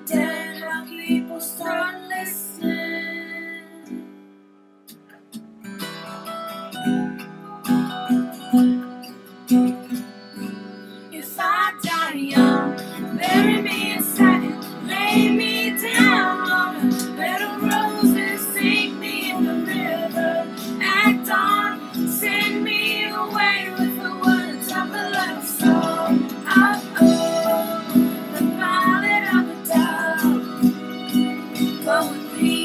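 Acoustic guitar being strummed, dropping away briefly about four seconds in, then a girl singing along with it from about twelve seconds in.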